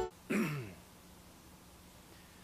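A man clears his throat once, briefly, the pitch falling as he does, a moment after the music stops. Quiet room tone follows.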